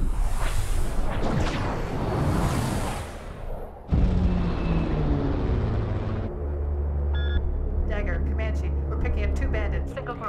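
Jet noise from low-flying fighter jets passing over, with rising and falling whooshes, for about four seconds. This cuts to the steady propeller drone of an E-2 Hawkeye turboprop, whose tone falls in pitch. From just past the middle there is a deep steady hum with a few short electronic beeps.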